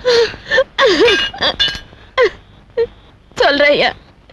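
A woman crying out in anguish, a series of short wailing, sobbing cries broken by pauses, the longest one near the end.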